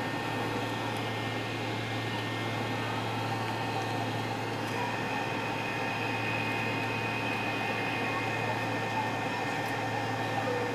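Steady cabin hum of an American Airlines MD-80 (Super 80) taxiing, its rear-mounted Pratt & Whitney JT8D turbofans at low power, with a low drone and a thin high whine that grows steadier about halfway through.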